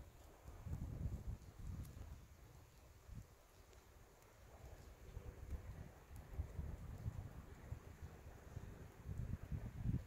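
Faint, uneven low rumble on an outdoor microphone, rising and falling without any distinct events.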